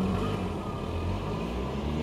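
Low, steady hum of a car's engine and running noise, heard from inside the cabin.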